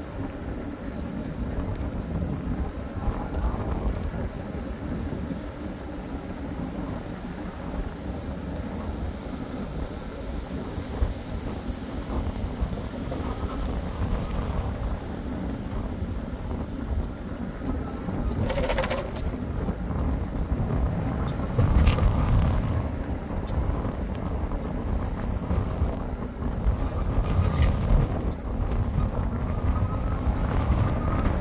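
Wind buffeting the microphone and road rumble while riding an e-bike along a paved road: a steady low rushing noise that swells briefly about two-thirds of the way through.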